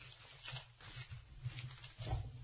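Faint room noise: a low steady hum with soft, scattered rustles and taps near the microphone.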